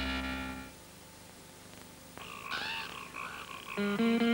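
A held musical chord fades out in the first second, then frogs croak in a swamp from about two seconds in, with guitar notes coming in near the end.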